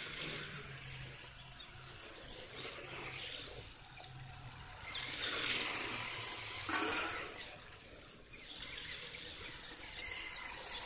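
Electric RC drift car running on asphalt: its motor and tyres scrubbing as it slides, swelling twice when it drifts past close by, about halfway through and again about seven seconds in.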